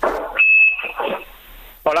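A short, high-pitched electronic beep on a telephone line, lasting about half a second, as a call is being connected.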